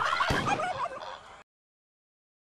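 A turkey gobbling, a rapid warbling call that fades and stops about halfway through.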